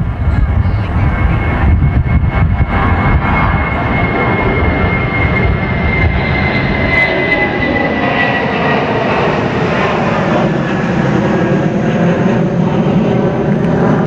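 Airplane passing low overhead: a loud, steady engine noise with a thin whine that falls slowly in pitch as it goes over.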